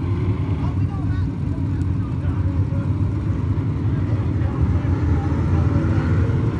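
A field of dirt-track Limited Late Model race cars' steel-block V8 engines running under throttle around the oval, a dense steady drone that grows louder near the end as the cars come closer.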